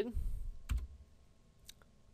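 A sharp single click about two-thirds of a second in, and a fainter click near the end, from a computer mouse button or keyboard key at a desk. The clicks close a software dialog.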